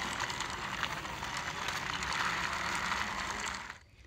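Small plastic wheels of a toy auto rickshaw rolling over a rough, mossy concrete wall: a steady scraping with fine rapid clicks that cuts off suddenly just before the end.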